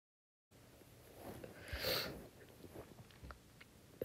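Faint close-up noises at the microphone: a short breathy hiss about two seconds in and a few small clicks.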